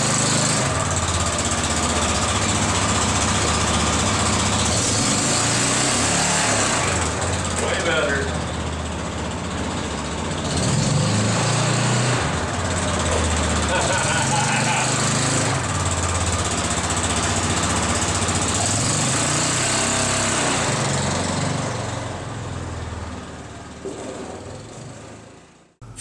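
Yamaha Rhino UTV's engine running as the machine is driven back and forth, the engine note rising and falling a few times. It fades out near the end.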